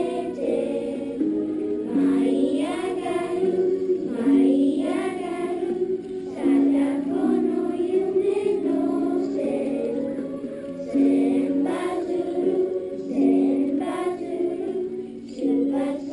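A class of children singing a song together in unison, with long held notes.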